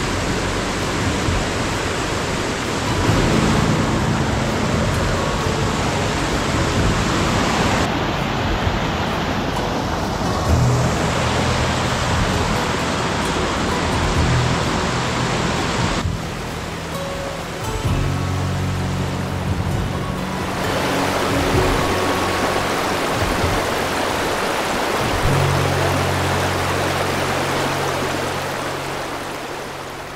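Background music with long held low notes over the steady rush of a rocky mountain cascade and stream. The water noise shifts when the picture cuts about halfway through and swells again shortly after.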